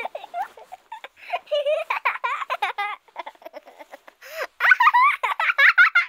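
Children giggling and laughing, in quick runs of high-pitched laughs.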